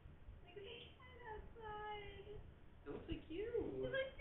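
Domestic cat meowing: one long, slightly falling meow, heard through a home security camera's microphone.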